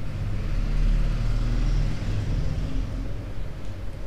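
Low rumbling background noise with a hiss that swells about a second in and eases off toward the end.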